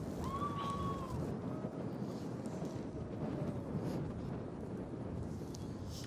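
Quiet outdoor ambience high above a city at night: a steady low rumble of wind and distant city noise, with a faint short tone about half a second in.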